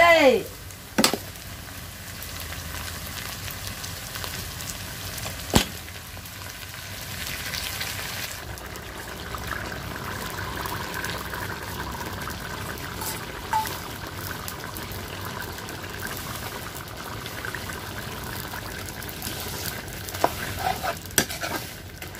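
Food sizzling and frying in a black iron kadai over a wood fire, stirred with a metal ladle. The ladle knocks sharply on the pan twice in the first few seconds, the sizzle grows a little about a third of the way in, and there is a cluster of scraping and clicking stirs near the end.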